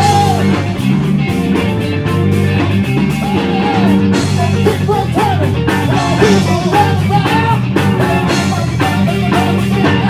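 Live rock band playing, with electric guitars, bass, drum kit and a singer. A held high note ends just after the start, and bending melody lines run over a steady driving beat.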